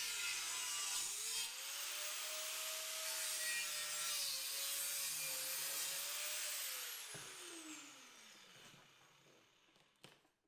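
Angle grinder with a cut-off wheel cutting through the steel tube of a tire carrier arm: a steady high hiss from the cut over the motor's whine, which dips and recovers as the wheel is loaded. About seven seconds in the grinder is switched off, and its whine falls in pitch and fades away as the wheel spins down.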